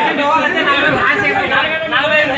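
Many men's voices talking over one another at once, a loud continuous babble of overlapping speech in a large hall.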